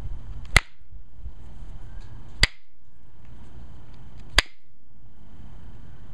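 Pressure flaking Alibates flint with a copper-tipped pressure flaker: three sharp snaps about two seconds apart as flakes pop off the stone's edge.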